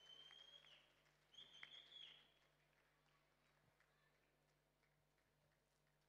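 Near silence: faint hall room tone with a low steady hum, and two brief, faint, steady high-pitched tones in the first two seconds.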